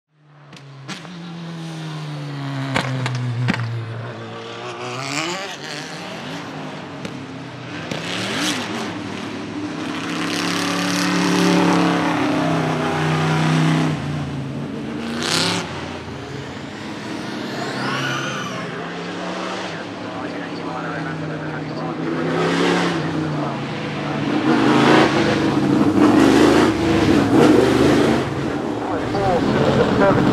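1995 Roush Ford Mustang GTS-1 Trans-Am race car's 750 hp V8 revving and running on and off the throttle, its pitch repeatedly rising and falling. A few sharp cracks come in the first few seconds, and the engine is loudest near the end.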